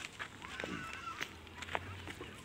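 Several short bird calls, one after another, each a brief rising-and-falling note, with footsteps on dry grass underneath.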